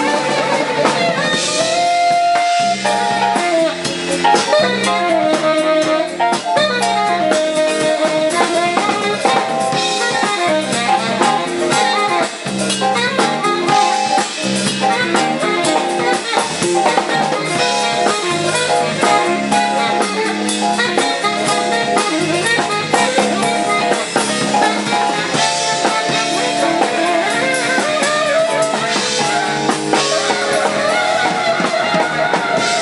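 Live jazz-funk fusion band playing: a tenor saxophone solos over an electric bass and keyboard groove with a drum kit keeping time on cymbals and snare.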